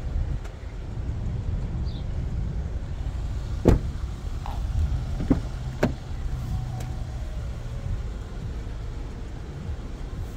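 Cadillac XT5 SUV doors being worked. A rear door shuts with one sharp knock a little under four seconds in, followed by lighter clicks of the front door latch as that door is opened, over a steady low rumble.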